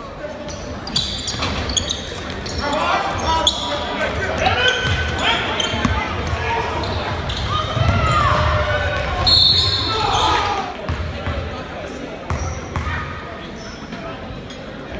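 Echoing basketball gym: players and spectators shouting and talking over one another, with a basketball bouncing on the hardwood floor.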